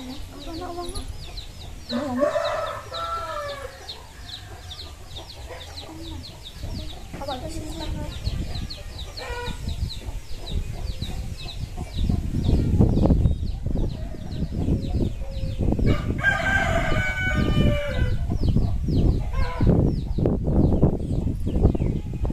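A rooster crowing twice, once about two seconds in and again around sixteen seconds. A run of faint high ticks fills the first half, and from about twelve seconds a louder low rumble with thumps runs underneath.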